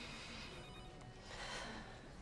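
Faint room tone with a faint, high, steady electronic ringing tone in the background.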